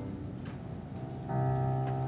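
Yamaha digital piano playing slow, held chords, with a new chord struck about one and a half seconds in. A couple of light knocks sound over the music.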